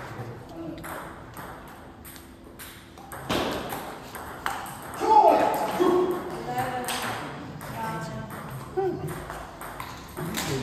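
Table tennis balls clicking off bats and tables in rallies, an irregular run of sharp ticks. Voices talk over it through the middle, loudest about five seconds in.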